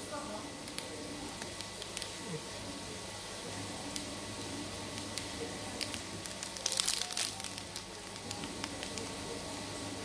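Plastic ice-cream wrapper crinkling and crackling as it is handled, with scattered small crackles and a louder crinkle about seven seconds in. A steady hum runs underneath.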